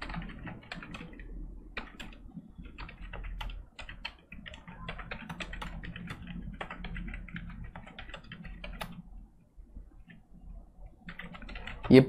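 Computer keyboard being typed on: quick, irregular keystrokes, pausing for about a second and a half near the end before a few more keys.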